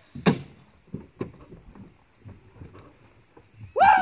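A pickup truck's door clicks open sharply, followed by a few soft thumps and faint footsteps on grass as a man climbs out and walks round the truck. Near the end he whoops.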